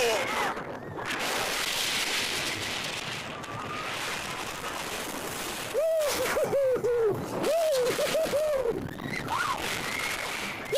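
Steady rushing noise of a Mack spinning coaster car riding its steel track at speed, with wind on the microphone. About six seconds in, a rider lets out a quick string of about six short rising-and-falling hooting cries.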